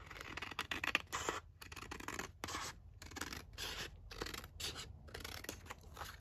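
Scissors cutting through a sheet of paper: a steady run of snips, about two to three a second.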